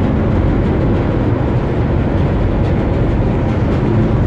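Steady low rumble of a cargo ship under way, its machinery running as the ship turns to come alongside the berth.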